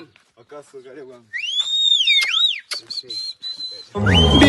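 A person whistling a high note that slides up, dips down and climbs again, then holds steady with slight wavers until the end.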